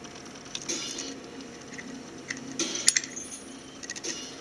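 Small metal clicks and clinks from a pinion gear being turned and worked by hand on a brushless motor's shaft against the spur gear. The pinion's set screw will not hold it on the shaft. Scattered clicks come in two clusters, with the sharpest click near three seconds in.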